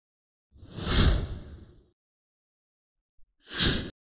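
Two whoosh sound effects. The first is longer and fades out after peaking about a second in. The second is short and cuts off suddenly near the end.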